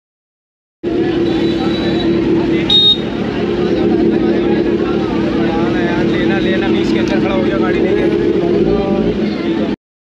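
Busy market street crowd chattering over the steady hum of an idling motorcycle engine, starting abruptly about a second in. A brief high horn beep sounds about three seconds in.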